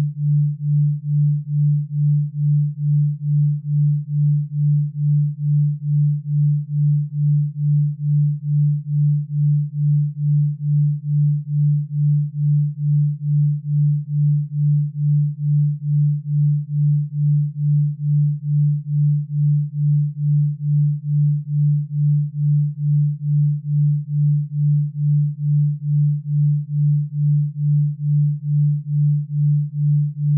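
Binaural-beat pure tone: a single low sine tone that swells and fades evenly a little over twice a second, at the 2.3 Hz beat rate.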